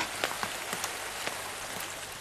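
Steady rain falling: an even hiss with scattered ticks of drops.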